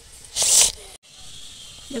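One short, hissing scrape, about half a second long, of a potato being peeled against the blade of a boti.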